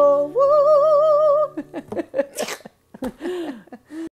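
A woman's singing voice holds the song's final note with a wavering vibrato over a sustained acoustic guitar chord, ending about a second and a half in. Short bursts of laughter and breaths follow.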